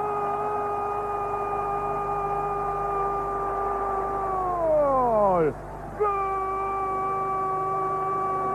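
A Spanish-language football commentator's long drawn-out goal cry, "Gooool!", held on one note for about five seconds and falling away at the end. After a short breath, a second long held cry starts about six seconds in.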